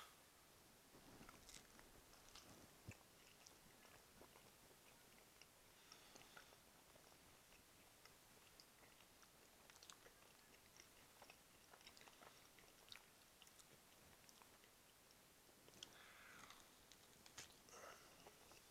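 Near silence with faint chewing: a man eating a mouthful of smoked beef rib, with scattered small mouth clicks.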